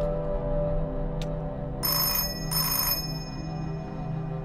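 Telephone bell ringing: two short rings, each about half a second long, over steady background music.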